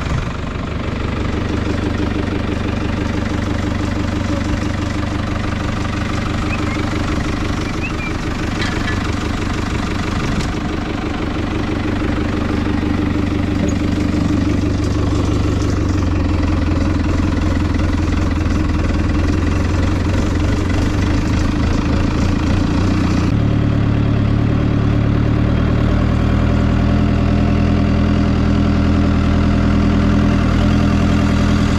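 New Holland TL90 tractor's diesel engine running steadily as the tractor drives. About two-thirds of the way through the engine note changes and grows slightly louder.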